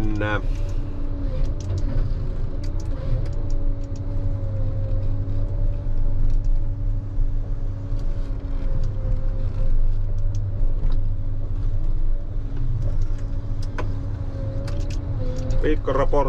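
Ponsse Scorpion King forest harvester running under load, heard from inside its cab: a steady engine and hydraulic drone with a steady whine on top, while the crane and H7 harvester head work a tree. A few faint clicks and knocks are scattered through it.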